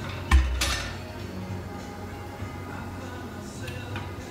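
Long-handled tire tool prying and striking against a metal wheel rim while hand-demounting a large motorhome tire: one loud metallic clank about a third of a second in, with ringing, then lighter metal clinks and scrapes.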